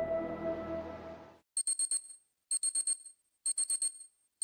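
Ambient music fading out, then a digital alarm clock beeping: quick runs of four or five high beeps, repeated three times about a second apart.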